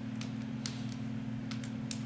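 A pause in the talk: a steady low hum, with a few faint, short clicks scattered through it.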